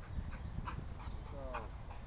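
Steady low wind rumble on the microphone, with a few faint ticks and one short, falling, high-pitched call about one and a half seconds in.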